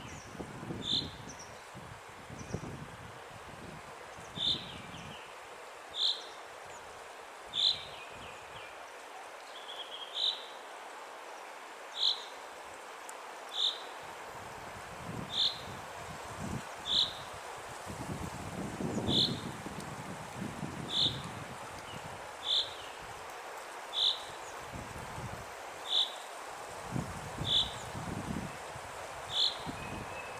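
A waterfall falls onto rock with a steady rushing sound. Over it, a short high-pitched call repeats about every one and a half seconds, the call of a small bird.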